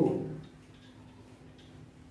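Faint ticks at a fairly even pace over a low steady hum.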